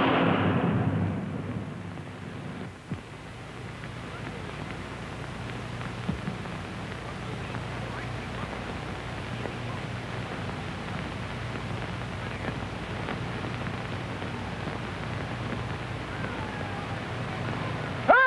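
Voices fade out within the first two seconds, leaving a steady low rumble with hiss and a couple of faint clicks. A wailing voice begins at the very end.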